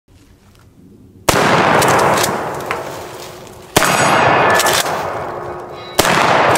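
Ithaca Model 37 12-gauge pump shotgun firing slugs: two shots about two and a half seconds apart, with a third at the very end, each followed by a long echoing tail. Steel targets ring after the hits.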